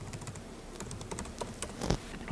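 Computer keyboard typing: an irregular run of key clicks as a short phrase is typed.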